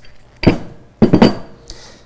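Steel hydraulic cylinders being set down on a metal diamond-plate table: one clunk about half a second in, then a quick cluster of metallic knocks around a second in, with a faint ring after each.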